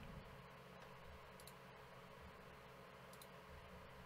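Near silence: a faint steady room hum, with two faint short clicks, one about a second and a half in and one about three seconds in.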